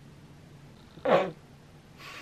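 One short vocal sound about a second in, falling in pitch and lasting about a third of a second.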